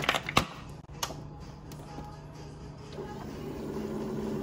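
A coffee maker being started: a few sharp clicks in the first second, then a steady hum.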